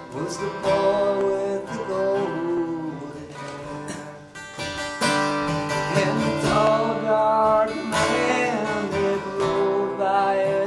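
A man singing a sad Civil War-era ballad, accompanying himself on acoustic guitar.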